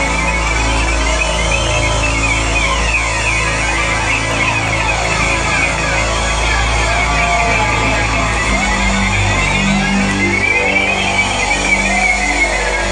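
Live rock band playing through a loud PA: electric guitar and synth tones that swoop and echo over a low, steady bass, with the bass line changing about two-thirds of the way through.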